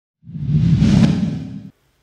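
A whoosh transition sound effect with a deep low body, swelling up to a peak about a second in and cutting off abruptly.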